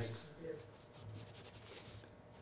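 Faint scratching of a pen writing on paper, with light clicks of laptop keys.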